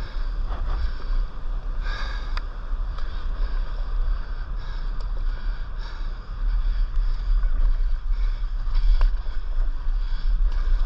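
Steady low wind rumble on the microphone of an action camera on a stand-up paddleboard, over sloshing sea water, with a few sharper splashes from paddle strokes and small waves.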